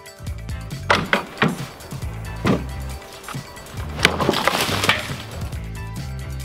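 Sharp cracks of wood breaking as a homemade spiked war flail smashes wooden crates: a quick group of cracks about a second in, another at two and a half seconds, and a loud crack about four seconds in followed by about a second of splintering. Background music plays underneath.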